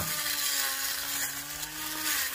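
Small cordless battery-powered grass trimmer running, a steady electric-motor whine with a high hiss as its spinning head cuts short grass.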